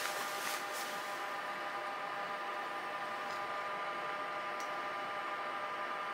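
Steady background hiss with a few faint steady tones running through it and a few faint ticks scattered across it; no distinct sound event.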